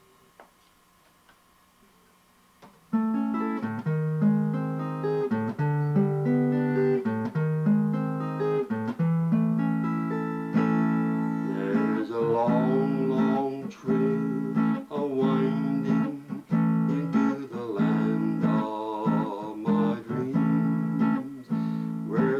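Near silence, then about three seconds in an acoustic guitar starts playing a tune; about halfway through an elderly man's voice begins singing along with it.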